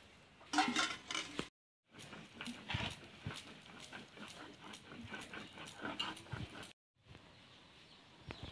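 An animal calls once for about a second, near the start. Scattered light clicks and knocks follow.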